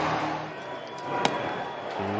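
Baseball stadium crowd noise, a steady spread-out murmur of fans, with one sharp pop a little past halfway.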